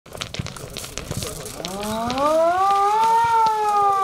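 A siren winding up: one smooth tone that rises in pitch for about a second and a half, then slowly sinks. Before it comes a run of sharp clicks and clatter.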